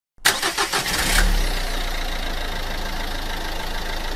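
A car engine cranks and starts, with a quick run of beats for about the first second, then settles into a steady idle.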